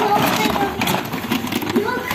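Plastic toys clattering and rattling as a hand rummages through a bin full of toy cars, with many small knocks and scrapes in quick succession.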